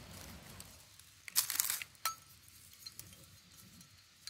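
Small hard objects clinking and scraping. A short crunching rasp comes about a second in, then one sharp clink with a brief ring, then a few faint ticks.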